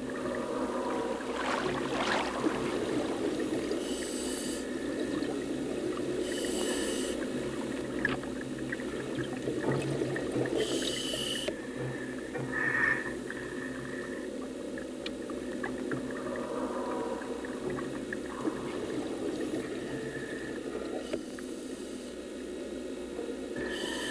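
Scuba diver breathing through a regulator underwater, with short hissing bursts of breath and bubbles a few seconds apart over a steady low drone.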